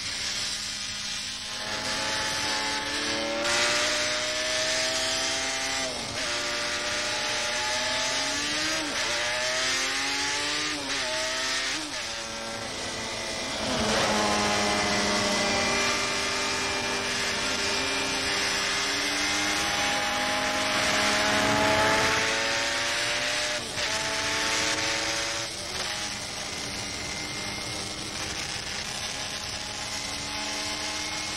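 Racing motorcycle engines at high revs. The pitch climbs through each gear and drops at each shift, again and again, with more than one bike's engine overlapping.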